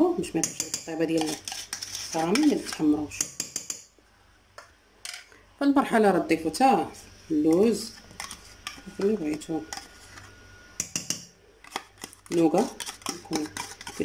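A metal spoon scraping chocolate dessert cream out of plastic pots and clinking against a stainless steel bowl of whipped cream: repeated scrapes and taps, with short squeaky scrapes that rise and fall in pitch.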